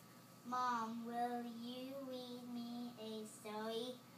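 A young girl's voice in a long, drawn-out sing-song, held notes that waver gently in pitch, starting about half a second in and followed by two shorter phrases.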